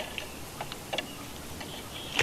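Sporadic faint high ticks and a few short chirps from small birds around the nest.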